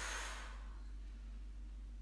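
A woman's single audible breath, a short rush of air at the start that fades within half a second, during a core crunch exercise. A steady low hum runs underneath.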